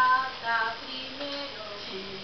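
A woman's high voice singing short phrases on stage with little accompaniment, loudest in the first half second.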